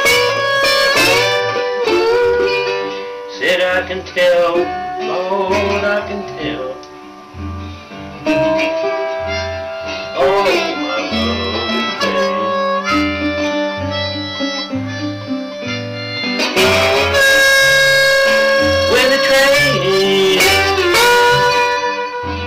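Blues harmonica playing a solo with bent, sliding notes and long held chords near the end, over bottleneck slide guitar and low bass notes on a steady beat.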